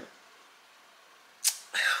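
Near silence in a small room for over a second, then a single short, sharp click-like puff about one and a half seconds in, followed by a faint breath just before speech resumes.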